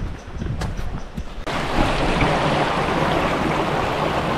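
Wind buffeting the microphone, then, about one and a half seconds in, the sudden steady rush of water running fast down a small, shallow stream through grass.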